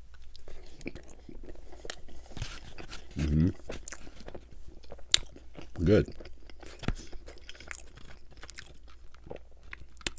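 Close-miked chewing of a soft, hot, gooey Cinnabon roll, with many small wet mouth clicks and lip smacks. There are two short "mm" sounds of the voice, about 3 and 6 seconds in.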